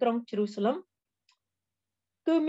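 A woman's voice reading aloud in Khmer for just under a second, then the track goes silent apart from one faint click.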